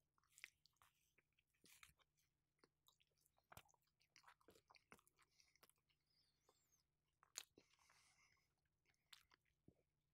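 Faint chewing of pita bread close to a microphone: sparse soft mouth clicks and smacks, the clearest about three and a half and seven and a half seconds in.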